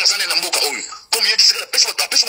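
Speech throughout, with a short break about a second in.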